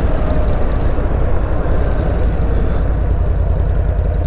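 Harley-Davidson Sportster 883's air-cooled V-twin engine running steadily at low road speed, heard from the rider's seat with wind rushing over the microphone.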